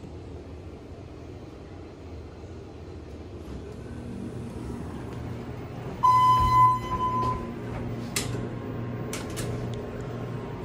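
ThyssenKrupp Endura MRL hydraulic elevator answering a hall call: a low steady hum grows slowly louder. About six seconds in, a single electronic chime tone is held for about a second. A sharp click and a few lighter clicks follow a couple of seconds later.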